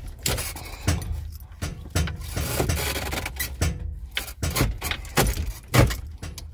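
Irregular clicks, knocks and rubbing: handling noise as things inside a car cabin are touched and moved. The sharpest knock comes near the end.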